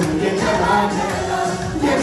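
Women's choir singing a gospel song together, with hands clapping along.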